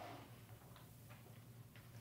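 Near silence: room tone with a low hum and a few faint ticks.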